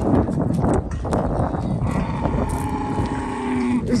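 A farm animal's long call, steady in pitch, starting about halfway through and held for nearly two seconds before stopping, over rustling noise.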